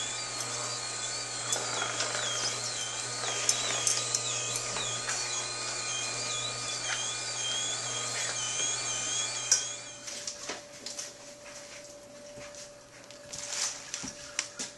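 Green Star twin-gear juicer running quietly with a steady low hum while produce is pressed down the feed chute with the plunger, a high wavering squeak riding over it. About ten seconds in the pressing stops, the hum gives way to a steadier, lighter tone, and leafy greens rustle near the end.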